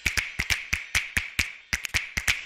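A quick run of sharp, short clicks or taps, about five or six a second and slightly uneven, each with a bright ringing edge: a percussive sound effect laid over an animated end screen.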